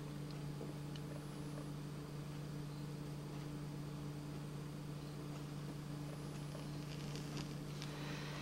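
Faint scratching of a pen drawing a curve on paper, over a steady low hum.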